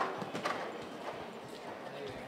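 Cantering horse's hooves striking the sand footing of an indoor arena close by, in an uneven run of dull beats; the loudest come right at the start and about half a second in.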